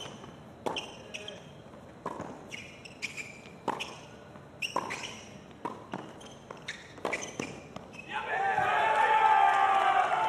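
Tennis ball struck back and forth in a hard-court rally: a string of sharp pops, roughly one every half-second to second. About eight seconds in the point ends and a small crowd breaks into louder applause and cheering.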